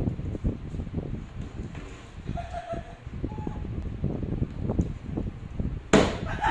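Small knocks and rustling from monkeys moving about on a tiled counter, with a couple of faint short high calls near the middle. Near the end comes a sharp loud clack as the lid of an electric rice cooker is flipped open.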